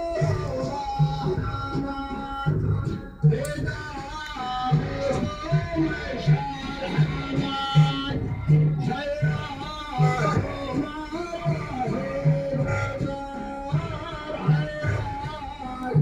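Loud music with a plucked-string melody over a steady bass beat, about two beats a second, played through a decorated car's speaker cabinets and heard from inside a neighbouring car.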